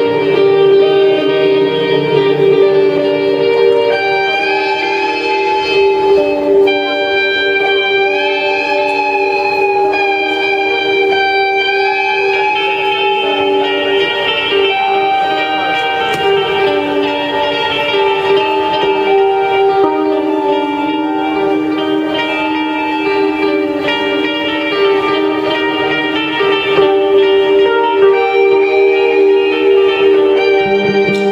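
Live rock band playing an instrumental passage on electric guitars, with ringing, sustained notes throughout; from about four seconds in, a guitar plays bent, gliding notes for several seconds.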